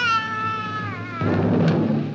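A toddler crying: one long wail that slowly falls in pitch and breaks off a little over a second in, with background music underneath.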